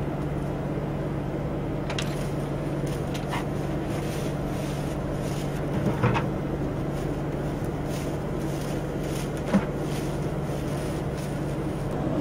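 Steady low hum of the running air seeder and tractor machinery, with a few light knocks of plastic pails being set under the drop tubes, the clearest about six seconds in and again near the end.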